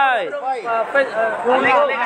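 Only speech: a man talking continuously, his voice sliding down in pitch in a long glide just after the start.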